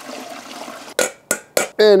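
Liquid stock poured from a stainless stockpot through a metal mesh strainer into a plastic container: a steady splashing pour that stops about a second in, followed by three short sharp clicks.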